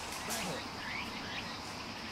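Outdoor woodland background: a steady hiss with a few faint, short bird chirps.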